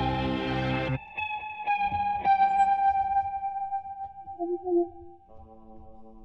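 Live band music: a loud sustained chord stops abruptly about a second in. Electric guitar notes through effects pedals then ring on with echo, with a few plucked notes, and slowly fade. Quieter held tones come back near the end.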